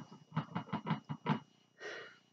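A makeup brush tapped into a powder eyeshadow pan about six times in quick succession, loading it with pigment. A soft breath follows near the end.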